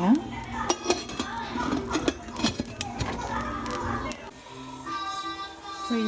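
Stainless-steel idli plate stand clinking and knocking against the metal of a pressure cooker as it is lowered in and the cooker is closed: a run of sharp metal clatters in the first four seconds. Background music plays over it and is clearest near the end.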